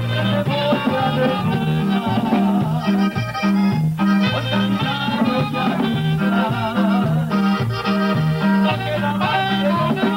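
Live band music with a melody of held notes over a bass that alternates between notes on a steady, even beat.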